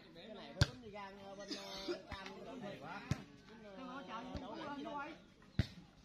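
A volleyball being kicked and headed back and forth in play: about five sharp smacks, the loudest one about half a second in and others near the middle and near the end. Background voices carry on between the hits.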